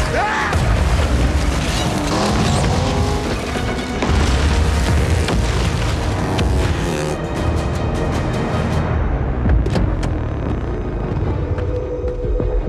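Film soundtrack of landmines exploding in repeated deep booms around a speeding car, mixed with dramatic score music. After about seven seconds the explosions thin out to a few sharp cracks and the music carries on.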